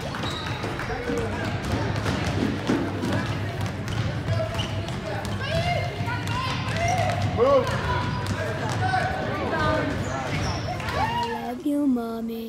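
Youth basketball game in a gym: a basketball bouncing on the hardwood court, with the voices of players and spectators echoing in the hall.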